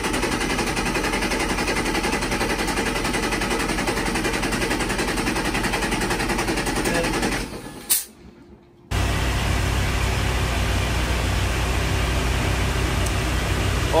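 Mercury marine inboard engine cranked over by its starter with the throttle held open for a compression test: a fast, even churning for about seven and a half seconds that stops with a click. About nine seconds in, a steady low drone of the boat's engines running underway takes over.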